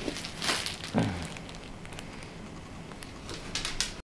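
Dogs shifting about on a vinyl floor: a brief rustle, then a short low grunt that falls in pitch about a second in. Near the end comes a quick run of claw ticks on the vinyl.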